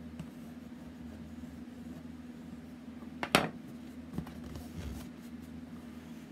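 Hands handling a chipboard drawer on a craft table: a few light ticks and one sharp tap about three seconds in, over a steady low hum.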